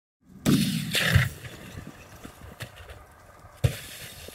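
A single sharp rifle shot near the end, after a short burst of noise about half a second in.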